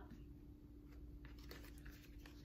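Near silence over a faint steady hum, with a few soft rustles and light clicks of washi tape and sticker paper being handled, a little past a second in.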